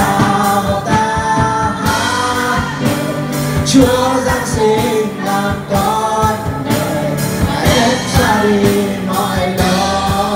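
A man singing a Vietnamese Christmas hymn into a microphone, backed by a live band with a steady drum beat.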